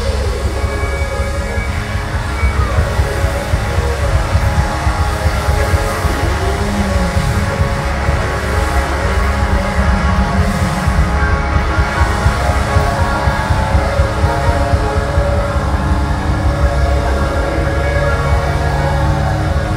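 Live rock band playing loud: a lead electric guitar solo on a Rickenbacker, with notes bent up and down, over drums and bass.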